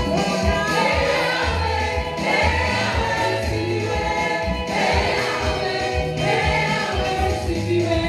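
Live gospel worship song: a woman leads on microphone with backing singers joining, over an instrumental backing with low held notes and a steady beat.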